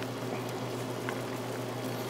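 Clams, cherry tomatoes and white wine simmering in a stainless steel pan on a portable gas burner: a steady soft bubbling hiss with a few faint pops, over a low steady hum.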